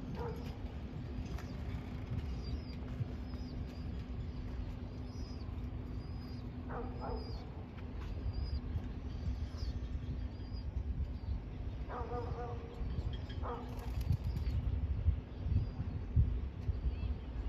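Outdoor ambience of uneven low rumble and a steady low hum, with a small bird chirping repeatedly through the first ten seconds and a few short pitched calls later on.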